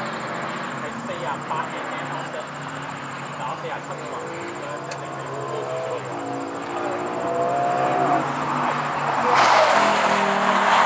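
Race car engines running on the circuit, one engine note climbing in steps as it accelerates through the gears. Near the end, a much louder rush of engine and tyre noise sets in as a car arrives into the corner.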